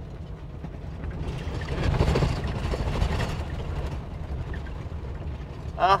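Inside a Class C motorhome driving over a washboard gravel road: a steady low rumble of tyres and chassis, swelling about a second in into a louder stretch of rattling and clattering from the jolted rig and its loose contents, then easing off.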